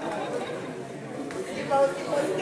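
Indistinct chatter of several voices, with one voice briefly louder near the end.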